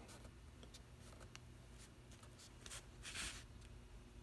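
Faint rustle of newsprint flyer pages being handled and turned, with a few light ticks and the loudest rustle about three seconds in.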